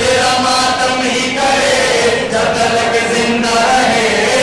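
Men's voices chanting a noha, a Shia mourning lament, in long held, drawn-out notes.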